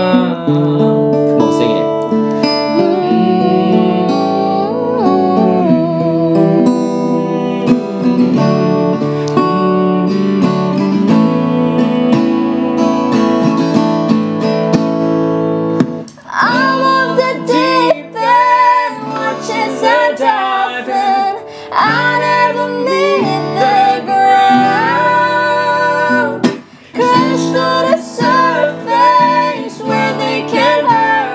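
Acoustic guitar strummed under a man singing. About halfway in the singing grows louder and fuller as a woman sings with him in a duet.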